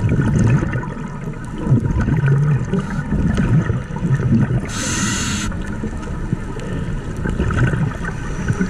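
Scuba diver breathing through a regulator, heard underwater: a short hiss of inhalation about five seconds in, with low bubbling and burbling of exhaled air throughout.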